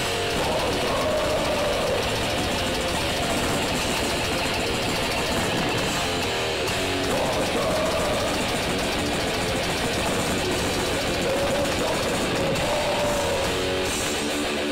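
Grindcore band playing live at full volume: distorted electric guitars, bass and drums in a dense, continuous wall of sound.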